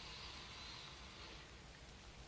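A faint, slow deep breath in through the nose, heard as a soft hiss over low room hum.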